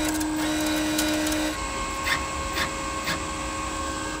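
Wire-feed motor of a Vevor MIG-200D3 welder running while the wire-feed switch is held, drawing flux-core wire off the spool and out through the MIG torch, over the steady sound of the machine's cooling fan, which is a little loud. The tone changes about a second and a half in, and a few light clicks follow.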